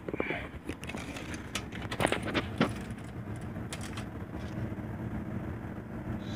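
Metal tape measure being handled against sheet-metal ductwork, giving several sharp clicks and rattles over a steady low hum.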